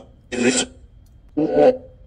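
Spirit box sweeping through radio frequencies: two short choppy bursts of static and clipped radio sound, one about half a second in and a voice-like one about a second and a half in.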